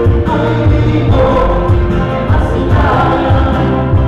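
Live band playing a song: a woman sings lead into a microphone over strummed acoustic guitars, electric bass and a drum kit.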